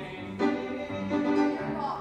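Musical-theatre duet singing with piano accompaniment: held sung notes changing every half second or so.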